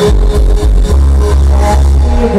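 Live electronic trip-hop band music played loud through a festival PA, carried by deep, long-held bass notes.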